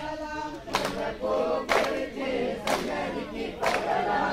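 A group of villagers singing a Tamil folk kummi song together, with the dancers clapping their hands in time about once a second, four claps in all.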